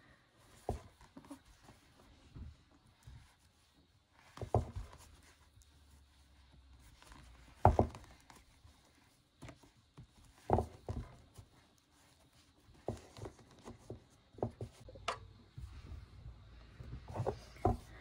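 Quiet handling noises from crochet: soft rustles of T-shirt yarn drawn through the stitches with a plastic crochet hook, with scattered light knocks and clicks as the basket is held and turned.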